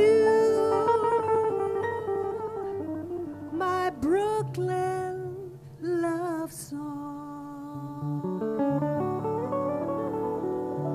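Live jazz band: a female vocalist holds a long note, then sings swooping slides up and down in pitch, over guitar, piano, upright bass and drums, the drummer playing with mallets.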